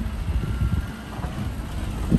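Inside the cabin of a van driving slowly over brick paving: a low rumble of engine and tyres with small irregular thuds.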